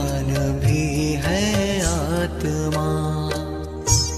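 Hindi devotional song (a Jain bhajan): a voice holds and bends out the end of a sung line over a steady low drone and sustained accompaniment. The singing stops about two seconds in and the instruments carry on alone, with a plucked string phrase starting at the very end.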